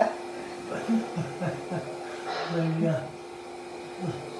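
Quiet, brief talking or murmuring over a steady hum.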